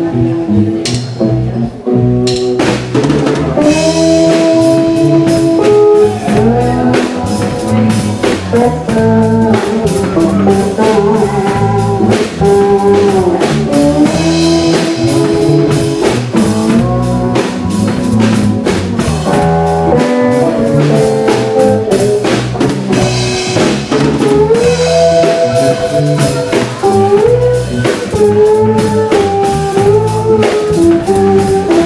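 Live instrumental band music: a PRS hollowbody electric guitar through a Koch Studiotone amp plays lead lines with string bends over a Hofner electric upright bass and a drum kit. The drums come in fully about two seconds in, then keep a steady beat.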